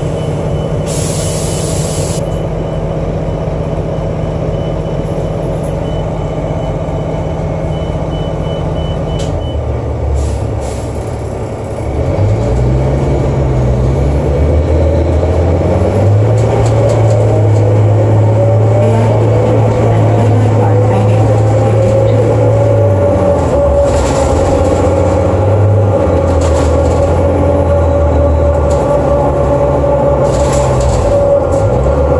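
Cummins ISL diesel of a New Flyer D40LF transit bus heard from inside the cabin, running steadily at idle, then from about twelve seconds in pulling away and accelerating, the engine note rising with a climbing whine. The Allison B400 transmission runs without torque-converter lockup. A brief hiss about a second in.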